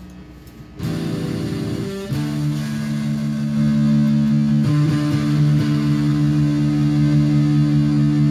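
Fermata Stratocaster-style electric guitar played through a small amplifier with distortion. Chords are struck and left to ring, starting about a second in and changing a couple of times.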